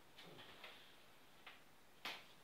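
Near silence with a few faint ticks and taps from a paper number card being handled and pressed onto a whiteboard.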